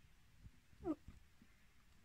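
A woman's soft, quick falling "oh" about a second in, otherwise near silence with a few faint low knocks of camera handling.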